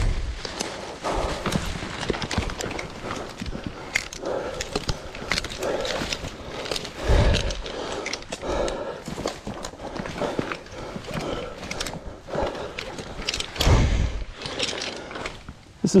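A tree climber working up a rope through the branches: a steady run of rustles, clicks and scrapes from leaves, bark and metal climbing hardware. Three low thumps stand out, one at the start, one about seven seconds in and one about fourteen seconds in.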